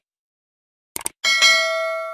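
A couple of quick clicks, then a bell-like chime strikes, strikes again just after and rings on, slowly fading.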